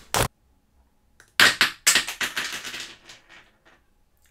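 A short sharp hit, then about a second later a loud crunching crack that breaks up and fades over about a second and a half: two plastic pen barrels snapping in half under a hand chop.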